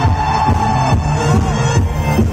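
Live concert music played loud through a festival PA system: an electronic dance track with a heavy, pulsing bass beat.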